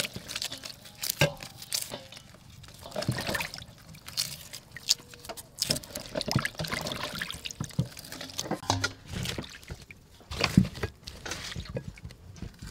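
Water splashing and dripping in a large metal basin as lemongrass stalks and peeled onions are washed by hand, in irregular bursts with a few sharp knocks.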